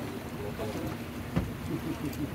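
Electric tour boat underway: a steady low hum with water and wind noise, and indistinct passenger voices. A single sharp knock about one and a half seconds in.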